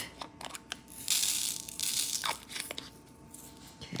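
Crinkling plastic rustle with small clicks, from hands handling diamond painting supplies.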